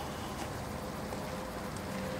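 Steady background noise at a moderate level, with a faint constant hum and a low rumble, and no distinct events.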